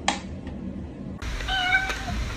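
A single sharp tick of a mechanical metronome near the start, then a cat meows once, briefly, about a second and a half in.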